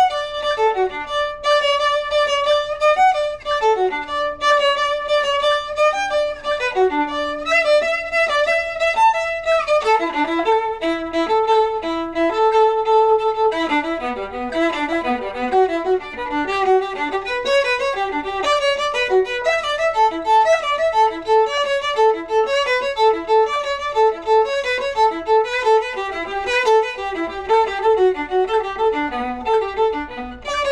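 Solo viola played with the bow: long held notes at first, then from about ten seconds in a run of quicker notes moving up and down.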